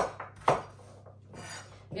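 Kitchen knife chopping raw butternut squash into cubes on a wooden cutting board: two sharp knocks of the blade through the flesh onto the board, about half a second apart, followed by a softer rasp.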